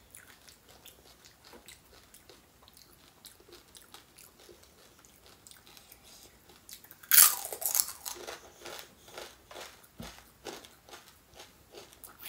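Close-miked mouth sounds of eating panipuri: faint chewing, then about seven seconds in a loud crunch as a crisp puri shell is bitten, followed by crunchy chewing that fades.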